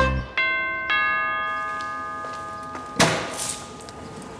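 Two-tone doorbell chime: two ringing notes about half a second apart, each fading slowly over a couple of seconds. A short burst of noise comes about three seconds in.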